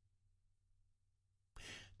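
Near silence, then near the end a man's short, audible breath in close to the microphone.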